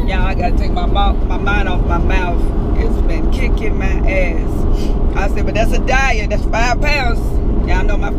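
Steady rumble of a car driving, heard from inside the cabin, with a woman's voice over it.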